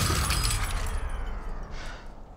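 Glass shattering, the crash's noisy tail dying away over about a second and a half with a falling sweep under it: a sampled film sound effect, struck just after a count of three, in a hardcore techno track.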